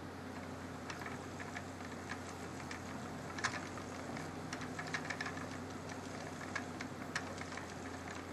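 Wooden spinning wheel running while yarn is spun: faint, irregular ticks and clicks from the wheel's moving parts over a low steady hum.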